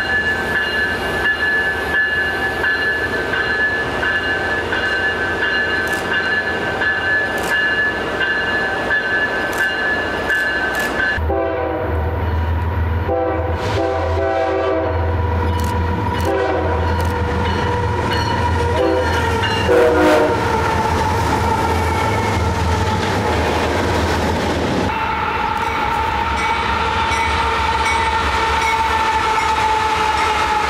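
A passenger diesel locomotive standing at a platform with a steady high-pitched whine. After a cut about eleven seconds in, freight diesel locomotives approach with a deep engine rumble, clanking and a train horn, loudest around twenty seconds in. Near the end comes a long pitched note that slowly drops as a double-stack freight train passes.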